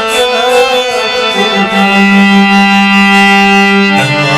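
Harmonium playing a melody under a man's singing voice, which trails off about a second in; the harmonium then holds a steady sustained chord.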